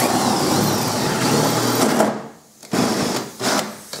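Cordless drill running under load in one long burst of about two seconds, then several short bursts.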